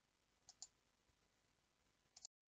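Near silence: faint room tone, with two quick faint clicks about half a second in.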